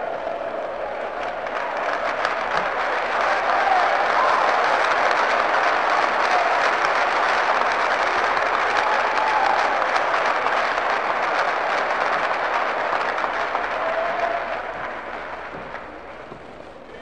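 A live audience applauding at the end of a song, the clapping swelling over the first few seconds, holding steady, then dying away near the end.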